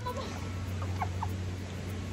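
River water splashing and running around swimmers, with two short squeaky chirps about a second in.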